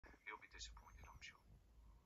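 A man's voice speaking faintly, a television interview played back through laptop speakers.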